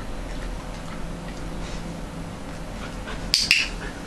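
A dog-training clicker clicks twice in quick succession, a sharp click-clack about a fifth of a second apart, near the end.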